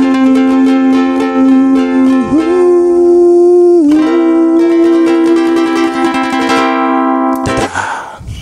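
Ukulele strummed steadily, with a man singing long, held notes over it. The music stops shortly before the end.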